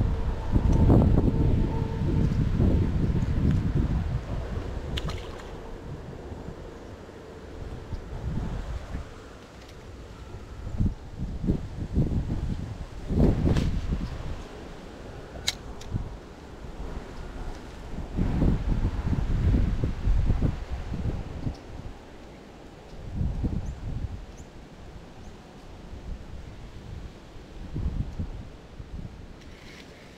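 Wind buffeting the microphone in uneven gusts, a low rumble that comes and goes, with a few sharp clicks in between.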